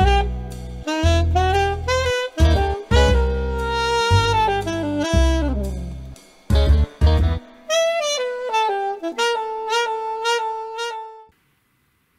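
Saxophone playing a jazzy melody over a backing with heavy low bass notes; for the last few seconds the saxophone carries on alone, then stops about a second before the end.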